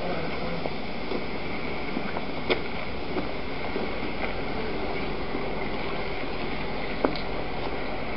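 Steady hiss and rumble of wind and handling noise on a handheld camcorder's microphone as it is carried along, with two brief clicks, one about two and a half seconds in and one near the end.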